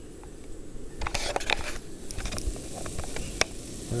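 A potato pancake frying in a pot on a backpacking gas canister stove: crackling and light clicks start about a second in, over a steady low rush.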